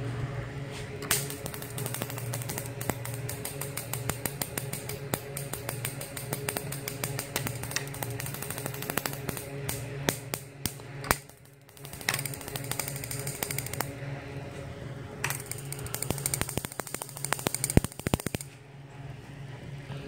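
Homemade high-voltage circuit running: sparks snapping across its gap in rapid, irregular clicks over a steady transformer hum, with a brief lull a little past halfway.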